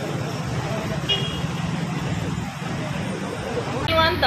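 Street traffic with a bus engine running close by, a steady low rumble under general road noise. A short high tone sounds about a second in.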